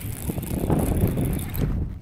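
Wind buffeting the microphone: an uneven low rush with a hiss on top that drops away near the end.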